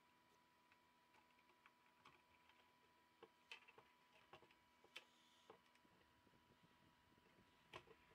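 Near silence with a few faint, light clicks and ticks from a laptop motherboard and its plastic chassis being handled as the board is worked loose and lifted out, the clearest about three and a half, five and eight seconds in.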